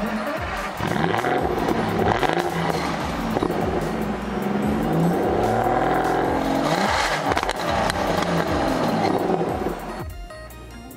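Aston Martin DB9's V12 engine heard at the exhaust tailpipe while parked, revved again and again, the pitch rising and falling with each blip of the throttle.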